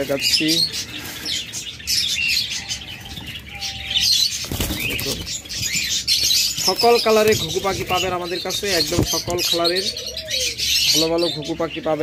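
Caged doves flapping their wings against the wire, with a short burst of wingbeats about halfway through. Many small cage birds keep up a constant high chirping behind them.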